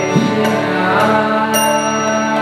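Kirtan: voices chanting a mantra over the steady drone of a harmonium, with one sharp percussion strike about one and a half seconds in.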